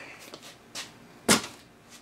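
Trigger spray bottle squirting soapy water onto an outboard lower unit to check it for leaks: a faint short hiss, then one louder sharp squirt a little over a second in.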